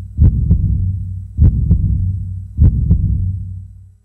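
Heartbeat sound effect: three double thumps, about one every 1.2 seconds, over a low steady hum that fades out near the end.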